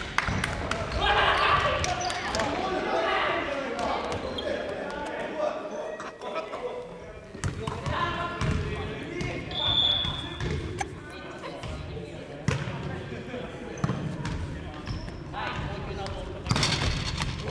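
Voices talking indistinctly in the background, with scattered sharp knocks throughout.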